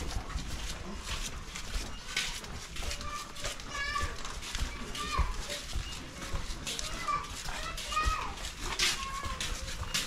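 Footsteps along a narrow paved alleyway, with several high-pitched gliding calls rising and falling in the middle stretch.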